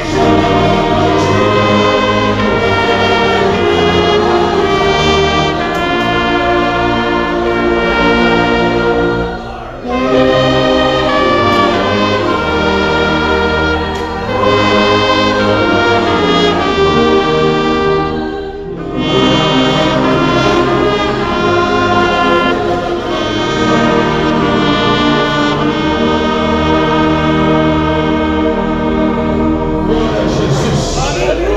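A church orchestra led by brass, with the congregation singing a hymn verse together in long held phrases, with short pauses between phrases about ten and nineteen seconds in.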